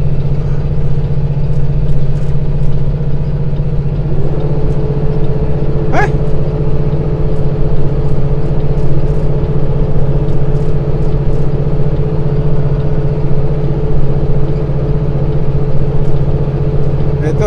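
Inside the cab of a heavily loaded semi truck climbing a long grade: the diesel engine drones steadily under load over road noise. A steady whine joins about four seconds in, and a brief rising chirp sounds about six seconds in.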